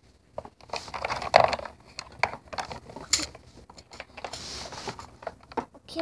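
Irregular clicks, knocks and rustling from things being handled and moved about, with a louder rustle about a second and a half in.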